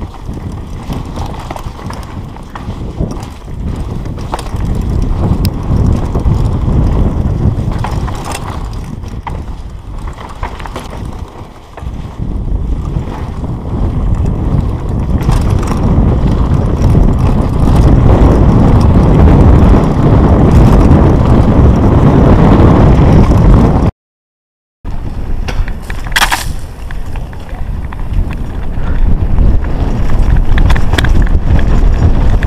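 Mountain bike descending a dry dirt trail, recorded on the rider's GoPro: wind buffeting the microphone over tyre rumble on loose dirt, with clicks and rattles from the bike over bumps. The loudness swells and fades with speed, and the sound drops out completely for about a second near the end.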